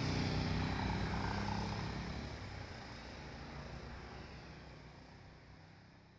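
Steady background rumble of street traffic with a low hum, fading out gradually.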